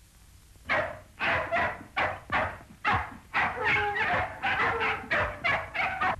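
A dog barking about a dozen times in quick succession, roughly two barks a second, starting about a second in.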